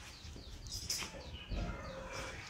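Birds chirping: several short, falling chirps, with a soft low thump about one and a half seconds in.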